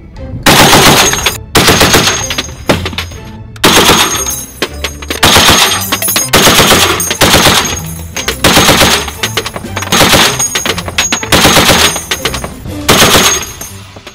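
A .50-calibre heavy machine gun firing repeated short bursts of automatic fire, about ten bursts, each lasting under a second with a brief pause between them.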